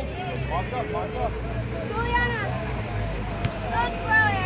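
Scattered distant voices of players and spectators calling out, over a low steady rumble.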